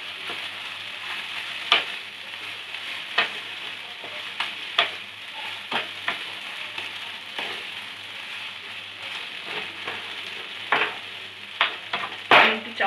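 Soya-chunk mash sizzling in a nonstick wok as a wooden spatula stirs it, with a steady hiss and a sharp scrape or tap of the spatula against the pan every second or two.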